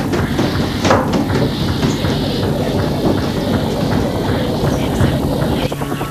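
A loud, steady rumbling noise from a horror-film soundtrack, with a sharp hit about a second in.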